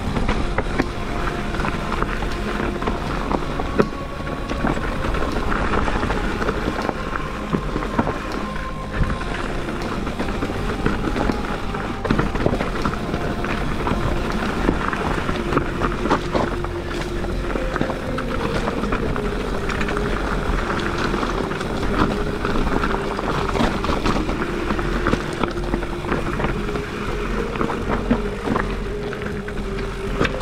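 Background music with long held notes that shift every few seconds. Under it runs the steady rumble and frequent small clatters of a mountain bike rolling down a rocky trail, with some wind on the microphone.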